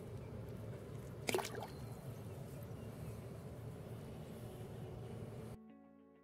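A small largemouth bass let go into shallow pond water: one sharp splash about a second in, over steady outdoor background noise. Near the end the outdoor sound cuts off and guitar music begins.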